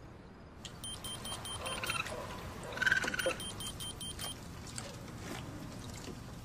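Radio-telemetry receiver beeping: two quick runs of short, high electronic beeps, about a second in and again about three seconds in, as the raccoon collar's signal connects for the data download.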